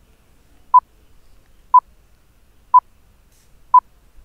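Electronic countdown beeps: four short, identical beeps of the same pitch, one each second, counting down the seconds.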